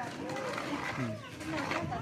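Soft voices of young women talking quietly together, no words clear.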